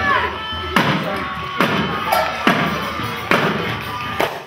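A children's group playing hand percussion, maracas and a tambourine among it, with a violin, together to a steady beat that lands a strong hit a little under once a second, with children's voices mixed in.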